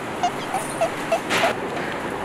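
A woman laughing in five short, evenly spaced bursts, about three a second.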